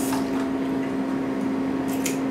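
Water running steadily from a tap, over a constant low electrical hum.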